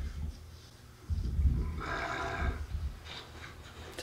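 A Shetland sheep bleats once, briefly, about two seconds in, over an irregular low rumble that starts about a second in.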